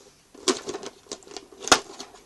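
Close handling noise from unboxing: a quick, irregular run of clicks and light rustles that starts about a third of a second in, with one sharp click near the end.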